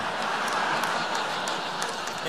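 Large audience laughing together, a steady wash of laughter with a few scattered claps.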